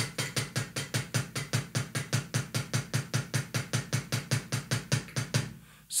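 A kick drum pedal's beater striking the drum head in a fast, even run of single strokes, about six a second, stopping shortly before the end. The pedal is set very loose, so the foot relies on the beater's rebound.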